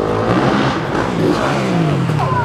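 Motocross bike engines revving hard as riders accelerate toward a jump. The engine pitch climbs early on and then drops away near the end.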